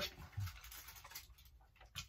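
Faint scraping and light clicks of a fork against a plate as food is cut, with one soft low thump about half a second in.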